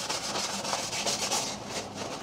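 Paper napkin rubbed briskly back and forth over a wooden board coated with black oil-based paint, wiping the surplus paint off dry. The fast, even strokes fade out near the end.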